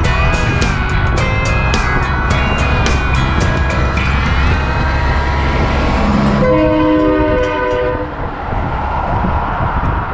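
Country song with a steady beat, which fades into road noise as a Peterbilt semi passes close by. The truck's air horn then sounds a multi-note chord for about a second and a half, followed by tyre and wind rush.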